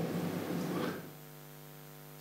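Faint, steady electrical mains hum with a buzzy row of overtones, heard most plainly in the second half as the room's echo of the last words dies away.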